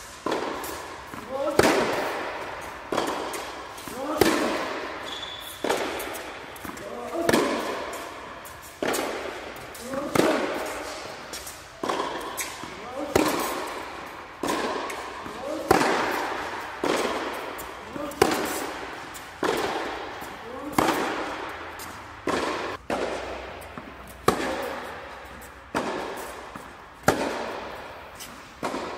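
Tennis ball struck back and forth with racquets in a baseline rally, about one sharp pop every second and a half, each hit echoing in a reverberant indoor tennis hall.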